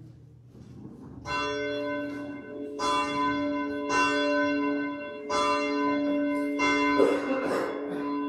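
A bell struck five times, evenly about a second and a half apart, each stroke ringing on into the next at one steady pitch. There is a brief noise near the end.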